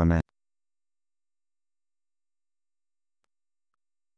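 Near silence, with no sound at all after a single spoken word at the very start.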